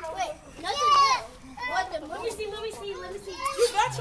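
Several children's voices talking and shouting over one another, with a loud, high-pitched shout about a second in.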